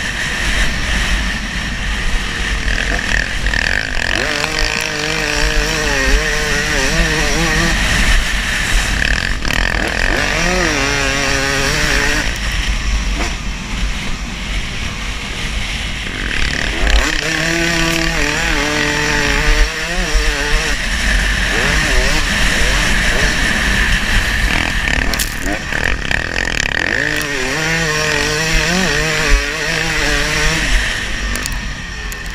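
Dirt bike engine revving up and falling back again and again as the rider accelerates and shifts along the track, with heavy wind buffeting on the camera microphone.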